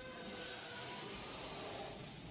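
An edited-in transition sound effect: a steady airy whooshing noise with a few faint high tones over it, starting suddenly.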